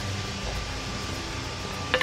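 Steady low background hum with a faint hiss, with no distinct sudden sounds.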